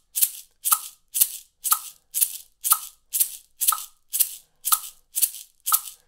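A single maraca shaken in even eighth notes, about two crisp shakes a second. A metronome at 60 beats per minute ticks once a second, landing on every second shake.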